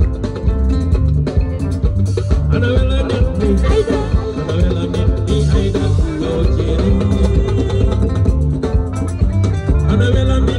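A live band playing loud music with a steady beat: bass guitar, drum kit, guitar and keyboard.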